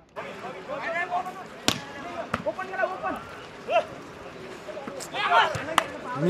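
Volleyball struck by players' hands during a rally: sharp smacks less than two seconds in, again about half a second later, and once near the end, amid spectators' shouting.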